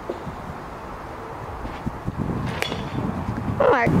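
Baseball bat striking a ball once about two and a half seconds in: a single sharp crack with a brief metallic ring. A shouted exclamation follows near the end.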